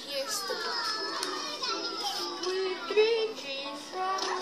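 Children's voices: several kids talking and calling over one another, with music underneath.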